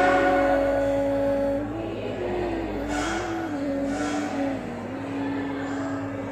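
A slow melody of held notes stepping up and down on a single pitched tone, with two short hisses about three and four seconds in.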